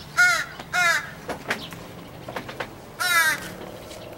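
A crow cawing loudly: two short caws in quick succession in the first second, then a longer caw about three seconds in, which the man takes as the crow demanding food.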